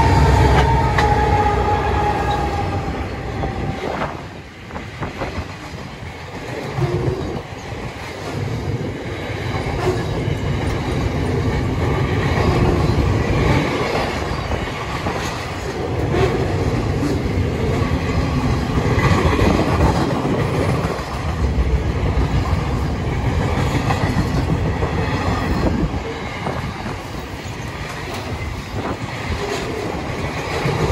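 Freight train passing close by: the two lead diesel locomotives go by with a tone that falls in pitch over the first few seconds. A long string of box wagons then rolls past with steady wheel-on-rail rumble and clickety-clack.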